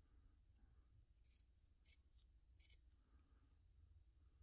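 Faint snips of a pair of scissors trimming the backing material close around the edge of a beaded earring piece: a few short, crisp cuts between about one and three seconds in.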